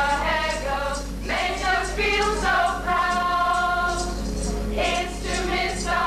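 A group of voices singing together in a choir-like blend, with some notes held for a second or more, over a steady low hum.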